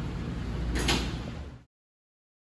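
Steady low rumble and hiss of commercial kitchen background noise, with a brief whoosh a little under a second in. The sound cuts off abruptly near the end.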